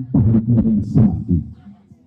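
A man's voice talking loudly through a PA speaker system, trailing off about a second and a half in.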